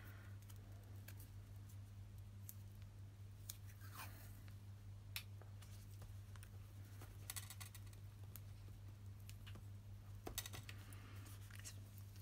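Washi tape being peeled off its roll and handled on paper, with scattered light clicks and taps and a brief rustle of tape near the end as it is pulled to tear; the tape is hard to tear. A low steady hum lies underneath.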